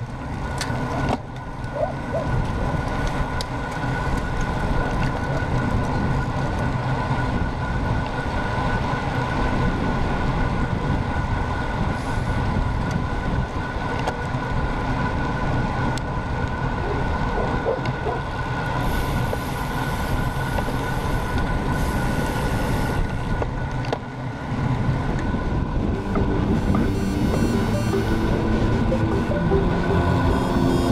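Wind noise on a road bike's low-mounted action camera at riding speed: a steady heavy rumble, with a faint steady whine above it.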